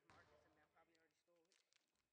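Near silence, with a faint voice speaking in the first second and a few faint clicks about three-quarters of the way through.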